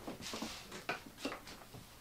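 Faint handling noises on a craft desk: a few small clicks and soft rustles as art supplies are picked up and moved.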